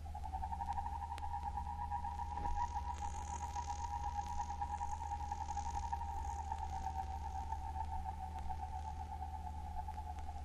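A sustained electronic tone, slightly wavering but steady in pitch, entering at the start and held throughout over a steady low hum, with a faint high shimmer from about three seconds in: electroacoustic music.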